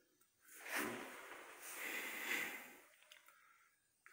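A person breathing close to the microphone: a short breath about half a second in, then a longer, soft breath that fades out before the three-second mark.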